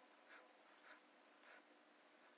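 Faint, soft strokes of a fine sable-hair watercolour brush on cotton watercolour paper: three short swishes about half a second apart, over a faint steady room hum.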